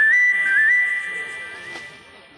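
A loud, high whistle-like tone that steps up in pitch in small jumps, drops back once and climbs again, then fades away over about two seconds.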